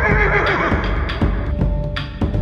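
A horse whinnying, a quavering call that starts at the outset and dies away by about a second in, over dramatic background music with regular drum hits.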